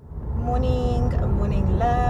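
Steady low rumble of a car's engine and road noise heard from inside the cabin while driving, with a woman's voice in two short phrases.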